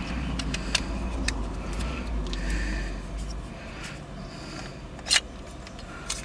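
Hard plastic parts of a car phone mount being handled and fitted together, with scattered light clicks and one sharper click about five seconds in, over a low rumble that fades after the first half.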